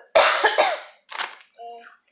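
A toddler coughing: a loud first cough, then a second shorter one about a second in, followed by a brief voiced sound.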